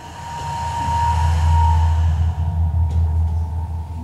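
A deep rumbling drone swells up over about the first second and holds, with a steady high tone over it.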